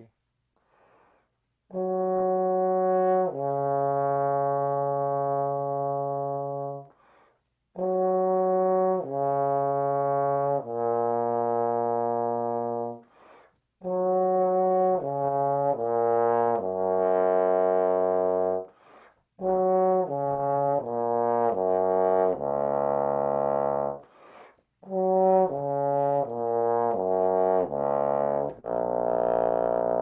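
Bass trombone playing slow, slurred descending G-flat major arpeggios in five phrases with a breath between each. Each phrase sinks lower than the last, and the final ones reach down into the pedal register.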